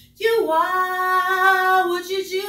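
A young woman's unaccompanied (a cappella) singing voice, holding one long note that begins a moment in and wavers slightly in pitch.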